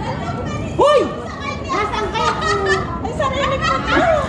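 Several women's voices chattering over one another in a group conversation, with a loud, high-pitched exclamation about a second in.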